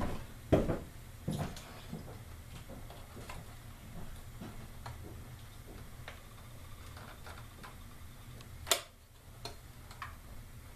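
Clicks and light knocks of metal parts being handled inside an opened transceiver chassis, as screws and the heat sink are worked loose: a few knocks early on, faint scattered ticks, and one sharp, loudest click near the end.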